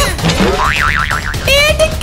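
A cartoon 'boing' sound effect, a quick wobbling tone about a second in, followed by warbling background music.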